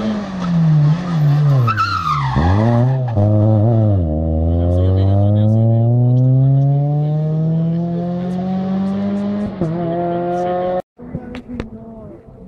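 Rally car engine coming off the throttle into a corner, its note falling with short blips, then pulling hard away with a long rising note and a quick shift near the end before the sound cuts off suddenly.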